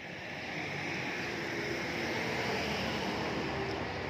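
A vehicle passing on a nearby road: a rush of tyre and engine noise that swells to a peak and eases off near the end.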